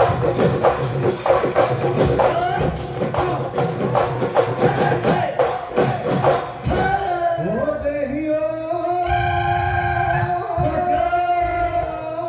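Bihu husori music: dhol drums and cymbals play a fast, even beat under a melody. The percussion stops abruptly about seven seconds in, leaving a few long held notes that slide into pitch.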